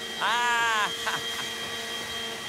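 A man's voice calls out once, drawn out and rising then falling in pitch, followed by a few short bursts of laughter, over a steady electronic hum of high tones.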